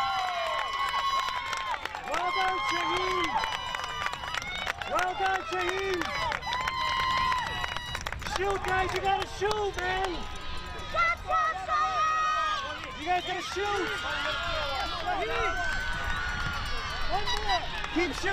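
Many voices shouting and calling across a soccer field, overlapping and coming in short bursts, with some calls held for a moment. Occasional sharp knocks sound among the voices.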